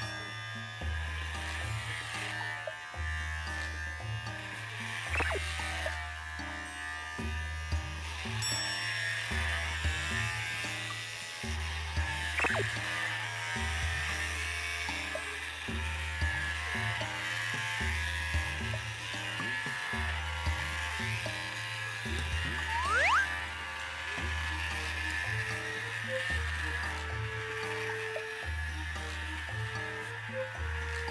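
Background music with a repeating bass pattern over the steady buzz of cordless electric pet clippers running through a dog's coat.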